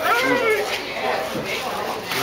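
A child's high-pitched, wordless squeal, its pitch sliding up and then down, followed by more excited children's voices.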